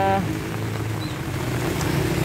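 Cars passing on a rain-soaked road: a steady wash of tyre and rain noise with a low engine hum.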